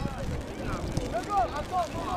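Children's high-pitched shouts and calls across a football pitch, many short cries overlapping one another, over a low rumble.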